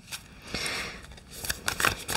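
A deck of tarot cards being handled and shuffled by hand: a soft rustle, then a run of light papery clicks in the second half.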